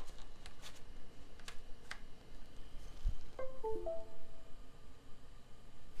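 A few small plastic clicks as a USB connector is plugged into a laptop. About three and a half seconds in, the Windows device-connect chime plays from the laptop speaker, a short run of a few notes, signalling that the drive has been recognised.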